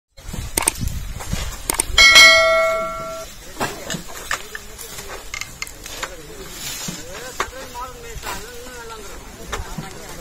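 A click, then a bright bell ding about two seconds in that rings for about a second, like a subscribe-button sound effect. After it come scattered light clicks, and later a high voice calling with a wavering pitch.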